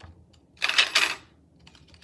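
A brief clattering rustle of small objects being handled close to the microphone, lasting about half a second and starting about half a second in.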